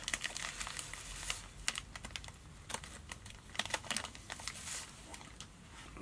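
Light crinkling and rustling with scattered small clicks: hands pulling strands of olive ripple ice fiber, a synthetic flash material.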